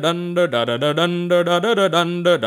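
Male voices singing a cappella in harmony on repeated 'da da da' syllables, a rhythmic vocal backing line with the low voice stepping down and back up about once a second.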